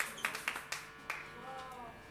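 Audience applause thinning to a few scattered hand claps that die out about a second in.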